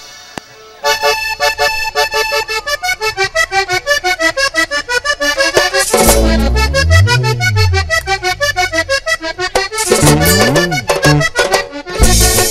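Button accordion playing the fast introduction to a vallenato song, rapid repeated notes starting about a second in. Low bass notes slide up and down beneath it from about halfway through.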